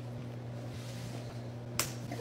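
Steady low electrical hum of room tone, then near the end one short sharp slap as a slice of processed cheese lands on a bald head.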